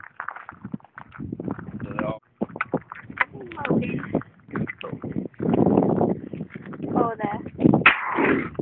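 Muffled voices mixed with scattered sharp clicks and knocks from handling, with no single loud gunshot standing out.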